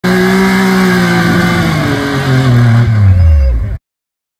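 Yamaha YXZ1000R side-by-side's three-cylinder engine running hard at high revs, its pitch falling from about halfway through as the revs drop, then cut off suddenly just before the end.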